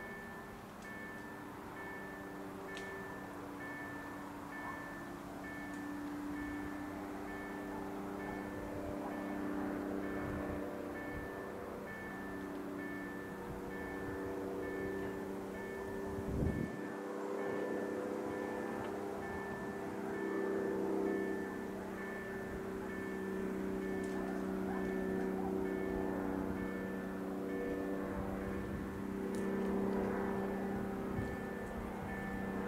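Level-crossing warning bell ringing in a rapid, evenly pulsed repeat, with a lower wavering hum beneath it and a single thump about halfway through.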